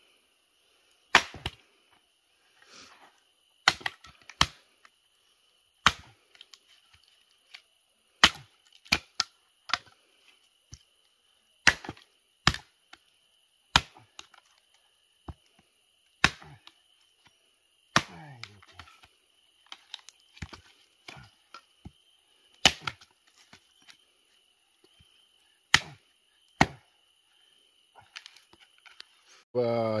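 Hatchet chopping a short log on a wooden stump into kindling: about fifteen sharp single chops at irregular gaps of one to three seconds. A faint steady high tone runs underneath.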